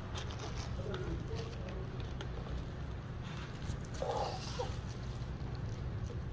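Faint rustling and light handling noises of gloved hands pulling oyster mushroom clusters off their growing bag, over a steady low hum. A short murmur of a voice comes about four seconds in.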